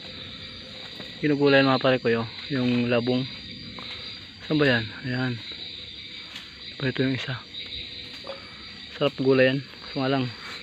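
Crickets chirring steadily in the forest at night, with a man's short wordless hums or murmurs breaking in about five times.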